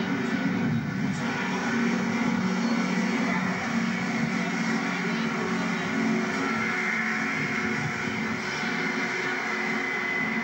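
Class 165 Thames Turbo diesel multiple unit moving past and away, its underfloor diesel engines giving a steady drone.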